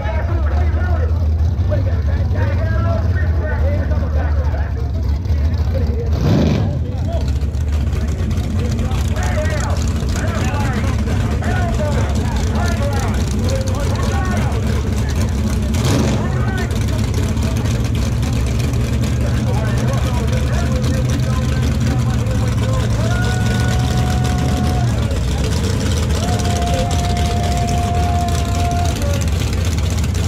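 Drag car engine idling with a steady low rumble under crowd chatter, with a brief sharp burst about six seconds in and another around sixteen seconds. Near the end a steady high tone sounds twice.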